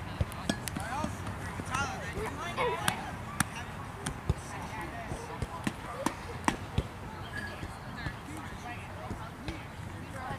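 Distant voices of players and spectators calling out around a youth baseball field, with irregular sharp clicks and knocks scattered throughout.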